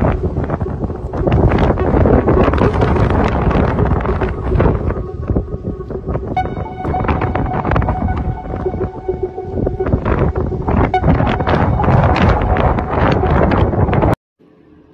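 Gusty wind buffeting the microphone in rapid, uneven blasts. A faint steady tone runs underneath, and a higher set of tones comes in about halfway through.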